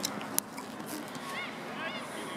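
Distant voices of players and spectators calling across an open sports field, a couple of short shouts rising and falling in pitch near the end, over a steady outdoor hum. A single sharp tap about half a second in.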